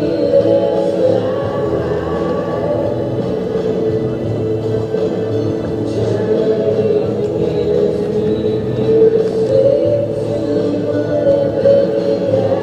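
Background music with sung vocals, played over a highlights reel.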